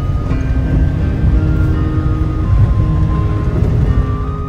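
A car driving on an unpaved dirt road, heard from inside the cabin: a loud, rough low rumble from the tyres and body on the dirt surface. Background music carries on faintly above it.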